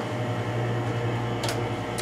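Steady low hum of room ventilation, with a brief faint click about one and a half seconds in as the room lights are switched off.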